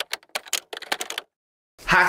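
Typewriter key-click sound effect: a quick, irregular run of clicks for about a second, then it cuts off to dead silence.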